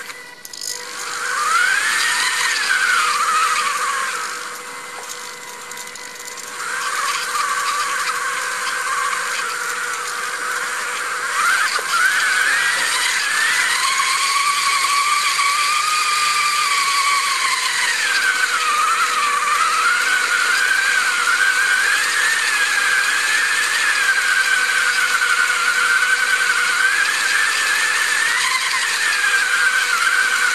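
Small electric motors of a toy robot car whining as it drives, the pitch rising and falling with its changes of speed and steering; it drops away briefly about four seconds in, then runs fairly steadily.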